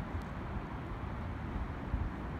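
Steady low outdoor rumble of wind and distant city traffic.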